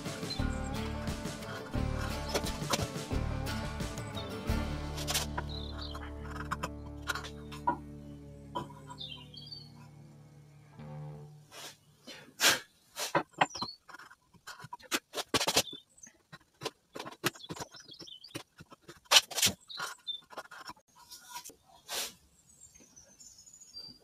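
Background music that fades out about halfway through, then a run of short, sharp, irregular clicks and scrapes from a hand chisel scoring across and paring torn fibres out of the corner of a sawn half lap joint.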